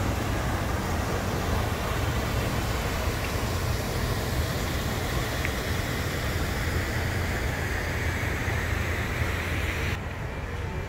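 Wind noise on the microphone: a steady low rumble under an even hiss.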